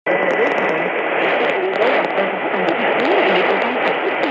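Shortwave broadcast of Radio France Internationale on 7205 kHz from a Sony ICF-SW77 receiver's speaker: a voice comes through heavy static and hiss. A thin steady high whistle runs under it, fading after the first second or two.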